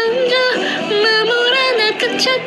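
A woman singing a high melody into a microphone, holding notes and stepping between them.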